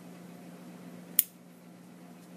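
A single snip of small scissors cutting through a worsted-weight yarn tail, a short sharp click about a second in, over a faint steady hum.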